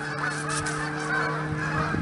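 A flock of geese honking, many calls overlapping, with a steady low hum underneath.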